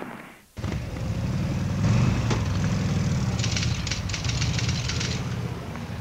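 A car engine running as the car pulls away, on old archive film sound. A quick run of ticks sits over it in the middle.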